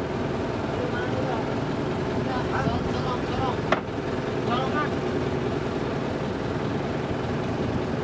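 A wooden motor boat's engine running steadily while under way, with a sharp click a little under four seconds in.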